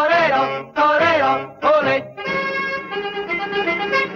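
A small swing band playing: short melodic phrases with bending, wavering notes, then a steadier passage from about two seconds in.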